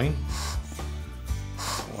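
Background music, with two short hissing puffs of air from a hand-squeezed VisibleDust Zeeion silicone bulb blower, about half a second in and near the end.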